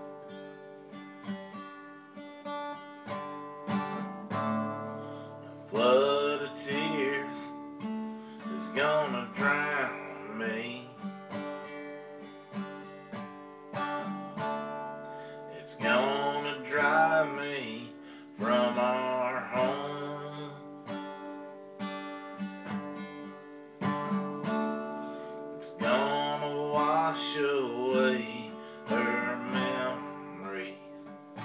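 Acoustic guitar strummed steadily through country chord changes, with short wavering vocal phrases about every three to four seconds.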